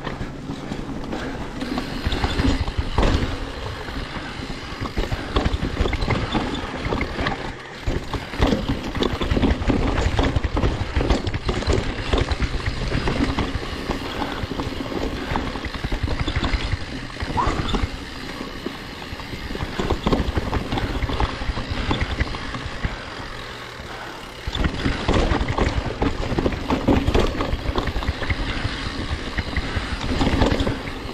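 Enduro mountain bike riding down a dirt forest trail: knobby tyres rolling over dirt and leaves, with the bike rattling and knocking over roots and bumps. The noise eases off briefly twice.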